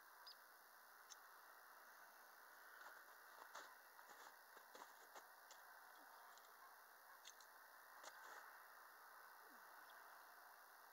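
Near silence: faint hiss with a scattered handful of soft clicks and no cannon shot.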